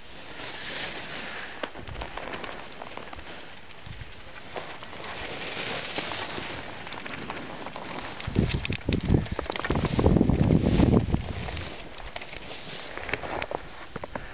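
Skis or snowboard edges scraping and hissing over packed, groomed snow during a fast descent through turns. From about eight seconds in, wind buffets the microphone in loud low rumbles for a few seconds.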